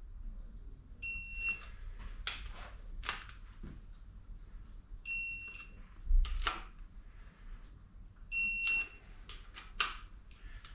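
Snap-on electronic torque wrench beeping three times, a short high beep each time a main bearing cap bolt reaches the preset 60 ft-lb. Sharp clicks and knocks come between the beeps.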